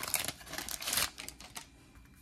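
Paper wrapper of a 1988 Donruss baseball card wax pack crinkling and tearing as it is peeled open by hand: a rapid crackle that dies away about a second and a half in.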